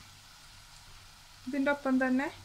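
Sliced onions frying in oil in an earthenware pot: a faint, even sizzle. From about one and a half seconds in, a voice speaking drowns it out.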